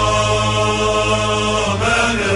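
Chanted Arabic song: voices hold one long note over a low accompaniment, moving to a new note near the end.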